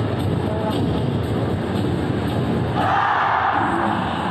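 Music with a steady beat, played over the noise of a large crowd in a sports hall. About three seconds in comes a brief burst of shouting from many voices, lasting under a second.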